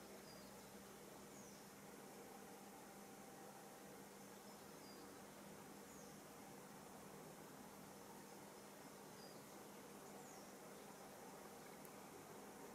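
Near silence: a faint steady hiss with a low hum, and a few very faint short high chirps.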